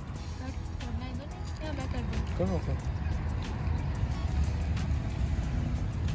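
Steady low rumble of wind buffeting the microphone, under quiet background music. A short voice calls out about two and a half seconds in, and a few light clicks are scattered through.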